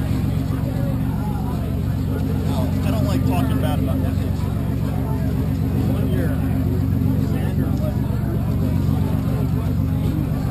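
A steady low motor hum with several even tones, unchanging throughout, under indistinct voices of people talking nearby.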